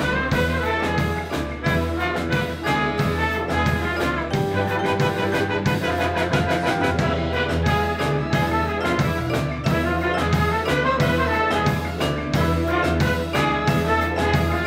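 Symphony orchestra with strings and a brass section playing an upbeat, Mediterranean-flavoured tune with a klezmer touch over a steady beat.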